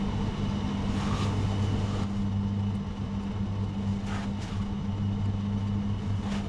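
A steady low mechanical hum, like a small motor running, with a few faint light ticks as metal tweezers pick at the masking on a painted plastic model part.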